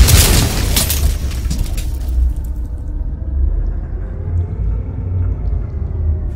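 Cinematic logo-intro sound effect: a loud boom with a crashing hit right at the start that fades over about a second, then a deep rumbling drone.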